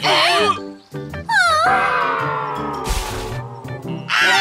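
High, squealing cartoon-creature cries over background music, their pitch sliding up and down; one long cry falls slowly in pitch for over a second and ends in a short noisy burst with a low thud about three seconds in.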